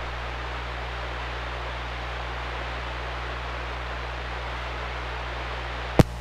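CB radio receiver static: steady hiss from the speaker with no station coming through, over a low steady hum, with a short click near the end.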